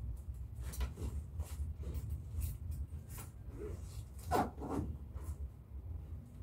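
Clothes and a travel bag rustling and knocking as they are handled during packing: short irregular rustles, loudest about four and a half seconds in, over a low steady rumble.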